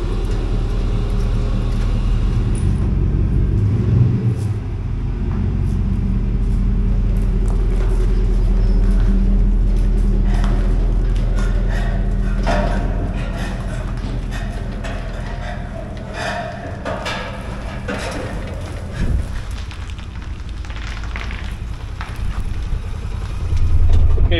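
Pickup truck engine running steadily, easing back after about sixteen seconds.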